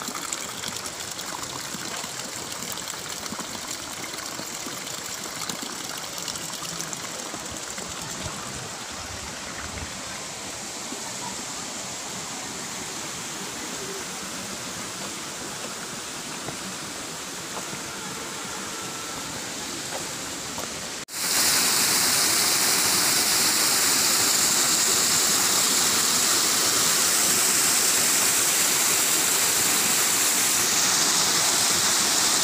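Water rushing over a small rocky cascade: softer and more distant for the first two-thirds, then, after an abrupt cut, loud and close for the rest.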